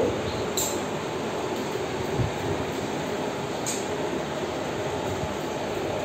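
A steady rushing noise with no clear pitch, broken by two faint clicks, one about half a second in and one a few seconds later.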